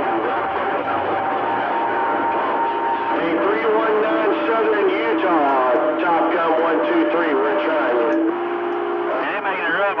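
CB radio receiving a crowded channel: a constant hiss of static carries several steady whistling tones from carriers beating against each other. Garbled, overlapping voices come in about three and a half seconds in. The channel is being made rough by other stations talking over it.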